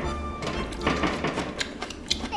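Quiet background music with a few held notes, under a few light clicks.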